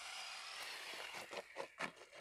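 Arrma Senton RC truck running away along a gravel road: a hiss that fades over about a second and a half as it recedes, with a few short ticks near the end.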